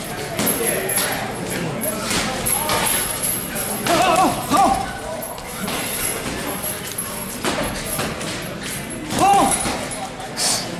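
Gloved punches landing on a hanging teardrop heavy bag in quick, irregular flurries of thuds, with voices heard briefly in between.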